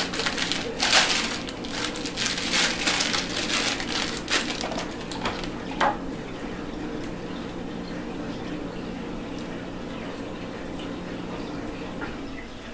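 Plastic packaging crinkling and rustling in quick bursts as small aquarium suction cups are handled and unwrapped, dying down about halfway through to quieter handling of the heater and its cord. A steady low hum runs underneath.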